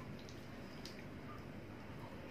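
Quiet room tone with a few faint, soft clicks from eating by hand, as fingers pick food off a plate and carry it to the mouth.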